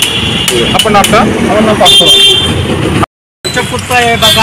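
Several people talking over street traffic, with a vehicle horn sounding briefly twice, the second time around two seconds in. The sound drops out completely for a moment about three seconds in, then the talking resumes.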